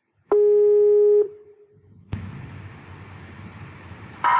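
Telephone ringing tone heard down the line on an outgoing call: one steady tone of about a second that dies away, then the line opens with a steady hiss as the call is picked up.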